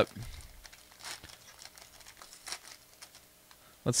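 Foil trading-card pack wrapper crinkling as it is opened and handled, with soft scattered rustles and small clicks that fade out near the end.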